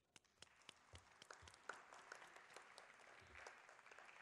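Faint audience applause: a few scattered claps that fill out after about a second into steady clapping from many hands.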